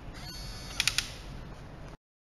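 Electronic locker lock's latch motor driving the latch back out automatically, a faint high whine ending in a few quick clicks about a second in. The sound cuts off just before the end.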